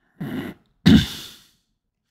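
A man coughing twice, a short cough and then a louder one about a second in.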